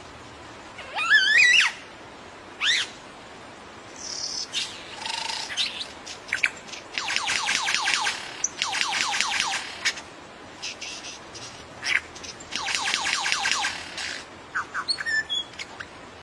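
Male superb lyrebird singing during its tail-fanned display: a varied run of calls, loudest a warbling whistled glide about a second in, then bursts of rapid repeated notes and scattered short whistles.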